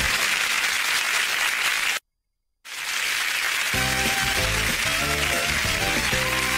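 Game-show theme music with studio audience applause. The music drops away, everything cuts to dead silence for about half a second around two seconds in, then the applause resumes and the theme music comes back in about a second later.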